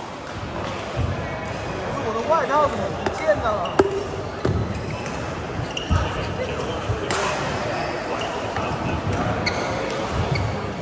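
Badminton play in a large hall: sharp racket hits on the shuttlecock, a burst of court shoes squeaking a couple of seconds in, and low thuds of footwork, over people talking in the background.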